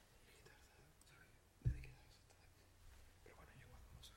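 Hushed, whispered talk picked up by a table microphone, with one sharp low thump about one and a half seconds in.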